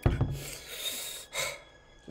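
A person's short voice sound followed by a long, breathy gasp, then a second shorter breath about a second and a half in.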